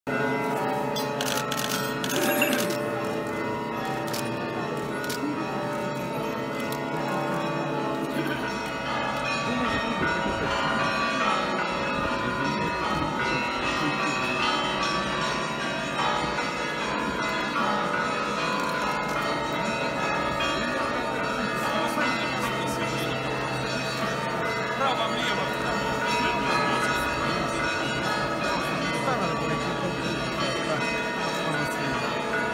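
Orthodox monastery bells ringing a continuous peal, several bells sounding together, over the voices of a large crowd.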